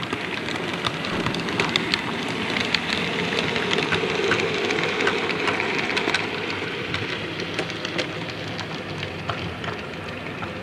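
Model Class 26 diesel locomotive and its wagons running along the layout track: a steady rumble with many small clicks of wheels over the rail joints. It is loudest in the middle as the train passes closest, then eases off.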